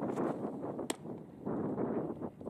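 Wind rumbling on the microphone, with one sharp pop a little under a second in: a pitched baseball landing in the catcher's mitt.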